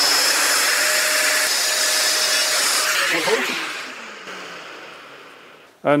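Festool plunge router running steadily at speed, then switched off about three seconds in and winding down, its pitch falling as it fades.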